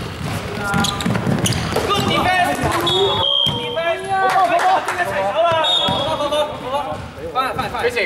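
A basketball bouncing on a hardwood court, with sneakers squeaking and players shouting, all echoing in a large indoor sports hall.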